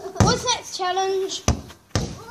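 A football being kicked and bouncing on paving: three sharp thuds, with a child's voice calling out in between, one drawn-out call in the middle.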